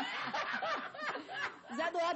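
Several people laughing and chuckling, mixed with bits of talk.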